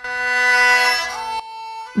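A long bowed note on a spike fiddle, bending slightly down in pitch about a second in, then dropping to a softer held tone.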